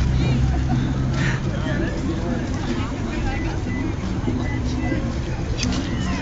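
Indistinct voices of people talking over the steady low hum of a running vehicle engine; the hum is strongest in the first second.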